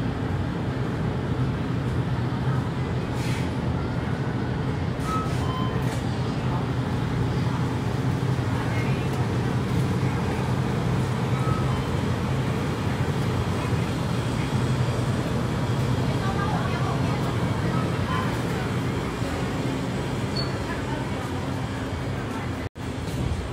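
Steady convenience-store room noise: a continuous low hum, such as from refrigerated display cases, with a faint murmur of voices and a few brief faint tones.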